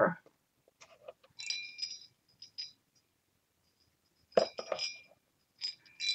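Small hard objects clinking, each clink with a short, bright ring: one cluster about a second and a half in and a louder one near the end, with a few soft clicks between.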